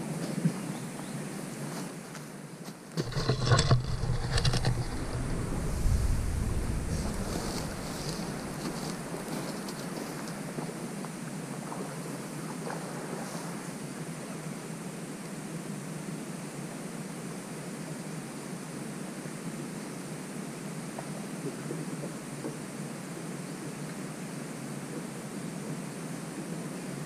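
Steady outdoor ambience with wind on the microphone. About three seconds in, a brief stretch of loud low bumps and rustling is heard as the camera is handled and moved.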